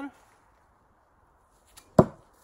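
A thrown hammer-headed throwing hawk striking a wooden log target and sticking, one sharp thunk near the end, with a faint click just before it.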